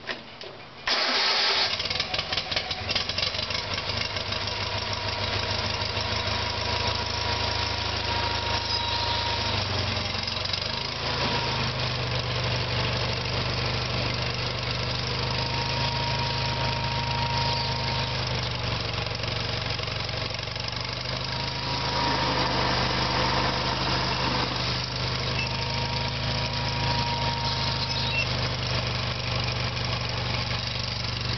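Sears Suburban SS/16 garden tractor engine cold-started on full choke, catching about a second in and then running steadily. Its pitch steps up slightly around ten seconds in.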